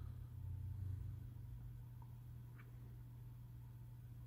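Quiet room tone with a steady low hum, broken only by a couple of faint small ticks a couple of seconds in.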